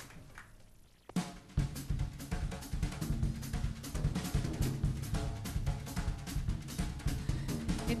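A jazz rhythm section of drum kit, upright bass and piano starts a swing intro about a second in, after a brief near-quiet moment, with busy drum strokes over a walking bass line.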